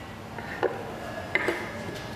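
Light kitchen clatter on a baking bench: three short knocks, one about half a second in and two close together near a second and a half in.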